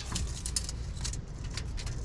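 Light, irregular clicks and taps from a steel tape measure being run out and held along a slide-out's metal gear rack, over a steady low hum.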